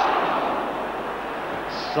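Large football stadium crowd roaring at a near miss. The roar swells at once as the shot goes into the side netting, then slowly dies away.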